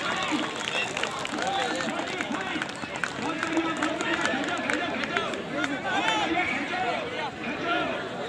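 Crowd of onlookers talking and calling out over one another, many voices at once, with scattered short knocks and clicks among them.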